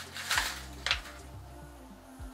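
Kraft paper tea pouch being pulled open, two short paper crinkles in the first second, over faint background music.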